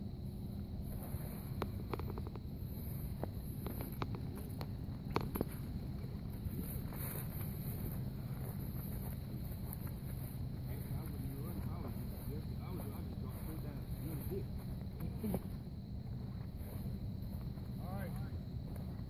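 Steady low outdoor rumble of wind on the microphone, with faint distant voices and a few faint clicks.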